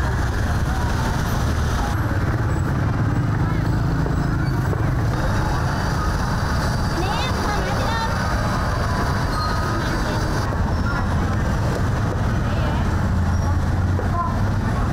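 Busy street-market ambience: motorbike and tuk-tuk engines running steadily as they pass, with people's voices talking.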